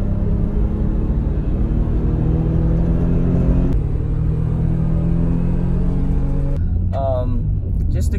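Naturally aspirated 2JZ-GE straight-six of a 1995 Toyota Supra SZ accelerating hard, heard from inside the cabin. The engine note climbs, drops suddenly as the automatic gearbox shifts up a little under four seconds in, then climbs again before the throttle eases near the end.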